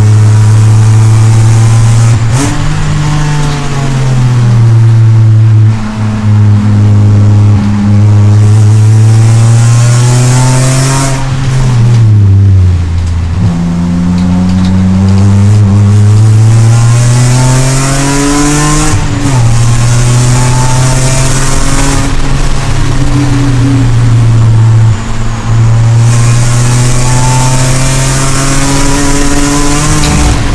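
BMW M3 race car's engine heard loudly from inside the cockpit at racing speed, its pitch climbing through the gears and dropping at each shift, with a deep slow-down and pull-away about halfway through. Wind and road noise rise and fall with speed.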